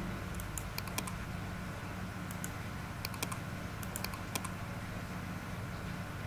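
Sharp clicks of a computer keyboard and mouse, coming in small quick clusters through the first two-thirds, over a steady low hum.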